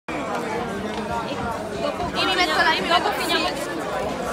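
Crowd chatter: many people talking at once in a packed hall, with one louder, high-pitched voice rising above the rest for about a second in the middle.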